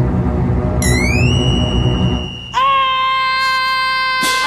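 Scary soundtrack music: a low rumbling drone, a rising glide about a second in that settles into a held high tone, then a sustained chord that comes in about two and a half seconds in.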